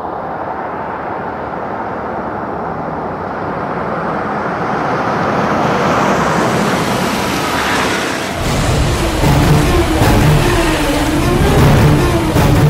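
A car drives up on a road, its engine and tyre noise growing louder over the first six seconds. About eight seconds in, a deeper rumble joins.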